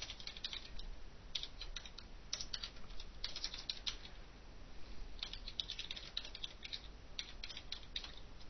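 Computer keyboard being typed on in short bursts of quick keystrokes with brief pauses between them.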